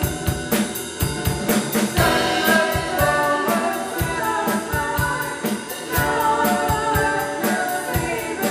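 Live rock band playing: a woman singing over an electric guitar through an amp, with a drum kit keeping a steady beat of regular cymbal and drum strokes.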